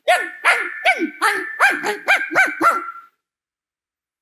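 A man imitating a small dog's yapping bark with his voice into a microphone: about eight quick yaps, which stop suddenly about three seconds in.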